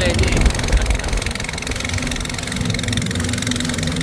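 Boat engine running steadily, a low even drone beneath a brief spoken word at the start.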